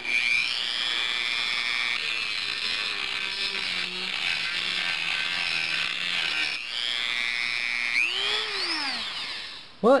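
Dremel Model 285 rotary tool spinning a 1/2-inch 60-grit sanding band on its drum, sanding paint off a metal hinge. It gives a steady high whine that wavers in pitch as the band presses on the metal, swoops up and back down near the end, then winds down and stops.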